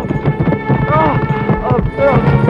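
Film soundtrack of a scuffle: a rapid, irregular run of knocks and thuds, with shouting voices over background music.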